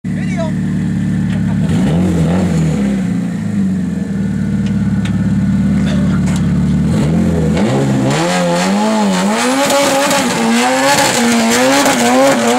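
Tuned 4G63 engine in a Mitsubishi Mirage coupe holding a steady fast idle, blipped briefly about 2 s in. From about 7 s it revs hard, the pitch swinging up and down in quick succession under hiss from the tyres as the car launches into a burnout.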